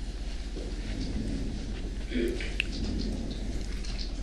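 Room tone of an open courtroom microphone: a steady low electrical hum under a soft even hiss, with a faint brief sound, such as a breath or a murmur, about two seconds in.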